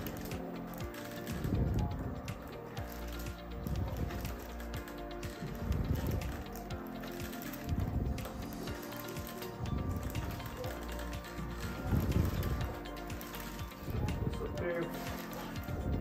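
Chiropractic flexion-distraction table working in slow repeated strokes, a mechanical sound about every second and a half, under background music.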